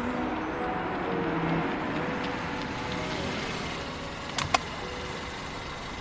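A car driving up and slowing, its engine and road noise steady and slowly fading. Two sharp clicks come close together about four and a half seconds in.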